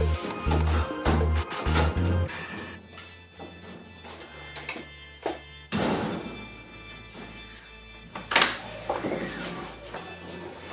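Background music with a heavy bass beat that drops away after about two seconds, under two loud thumps about six and eight and a half seconds in from a sofa being shoved out through a doorway.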